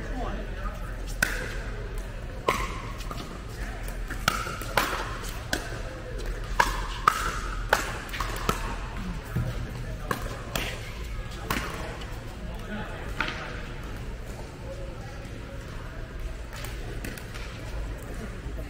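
Pickleball rally: paddles hitting a hollow plastic ball in a run of sharp, short pops, about half a second apart in the quickest exchange around the middle, then thinning out.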